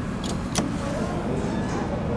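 Steady low rumble with voices faintly in the background and a sharp click about half a second in.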